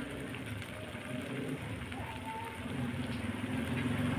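Squid adobo sauce simmering in a wok, a steady bubbling and spattering.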